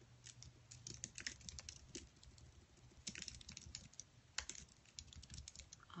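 Faint, irregular clicking of typing on a keyboard, with a low steady hum beneath it.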